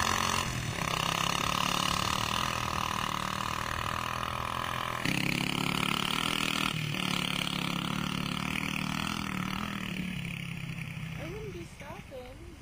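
Motorcycle engine running steadily, its pitch and level stepping up and down a few times as the throttle or gear changes, then fading away near the end.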